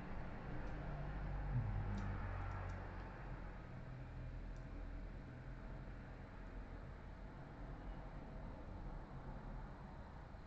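Quiet room tone with a steady low hum and a few faint clicks in the first few seconds.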